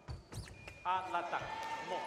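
Foil fencing exchange: a thump of footwork on the piste, then a fencer's shout as the touch lands, with a steady electronic tone from the scoring machine near the end.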